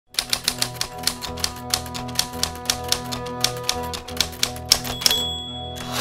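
Typewriter keys clacking in a quick, irregular run, several strokes a second, over a sustained music bed. About five seconds in, a high bell-like ding rings out as the typing stops.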